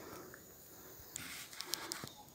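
Faint outdoor background with a steady high insect drone. A bit past a second in, a soft rustle with a few light clicks joins it, typical of handling or movement among vegetation.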